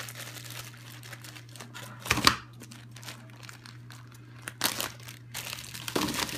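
Clear plastic zip bag of coins crinkling as it is handled, with a louder rustle about two seconds in and more rustling near the end.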